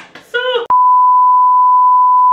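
Television test-pattern tone: one steady, loud, high-pitched beep of unchanging pitch, the reference tone that goes with colour bars. It cuts in abruptly right after a short spoken word.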